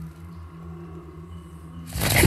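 Film soundtrack: a quiet, sustained low drone of ambient score with a few steady held tones. Right at the end a loud rushing sound begins.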